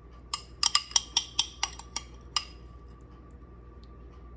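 Metal spoon clinking against glass, about ten quick taps in the first two and a half seconds as leftover marinade is spooned out of a glass bowl into a glass baking dish.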